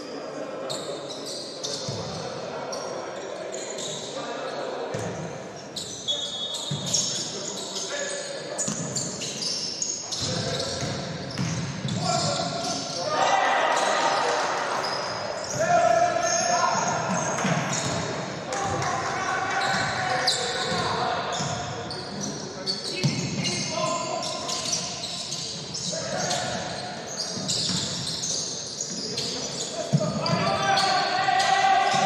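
A basketball bouncing on a hardwood court during play, with players' and coaches' voices calling out, all echoing in a large sports hall.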